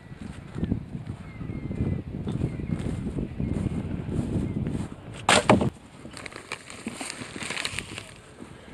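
Footsteps across grass with handling rumble, then a loud clatter about five seconds in, followed by the crinkling of a plastic bag and light clinks of crushed aluminium drink cans gathered by hand as litter.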